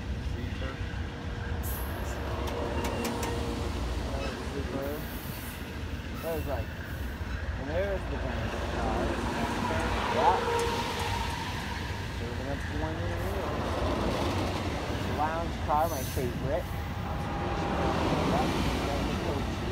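Amtrak Superliner passenger train pulling away, its diesel locomotives and rolling cars giving a steady low rumble, with a few short high squeals and glides over it.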